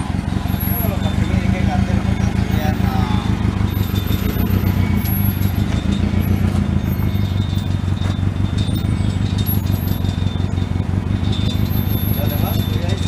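Forklift engine running steadily at a low, even hum while it carries a load on its forks.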